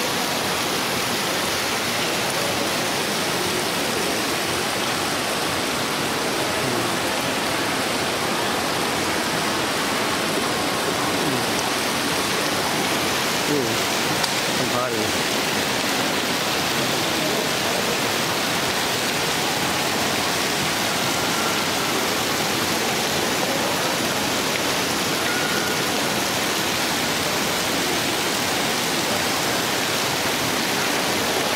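Indoor fountain's water falling and splashing in a steady, continuous rush, with a murmur of voices underneath.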